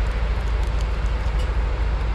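Steady low rumble of a Setra coach's diesel engine idling.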